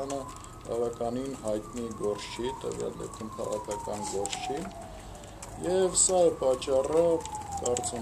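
A man speaking Armenian close to the microphones, in phrases with short pauses. A faint single tone slides slowly downward in pitch beneath his voice.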